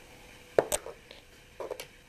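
A screwdriver working a screw into a wooden chair's corner block: one sharp click about half a second in, then a few light clicks near the end, with quiet room tone between.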